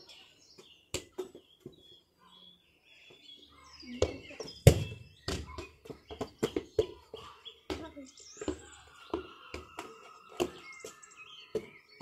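Irregular thuds and knocks of running footsteps and a ball on a paved lane, the loudest thud a little after four and a half seconds in, with birds chirping.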